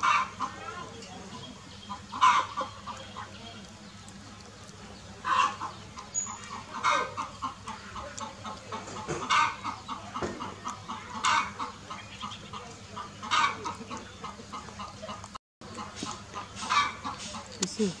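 Chickens clucking, with short sharp calls about every two seconds between runs of rapid clucks.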